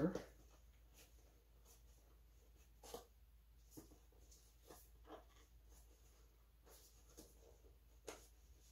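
Near silence with a faint scatter of small clicks and scrapes, about a second apart, from scissors and fingers working at the sealed cardboard CPU box.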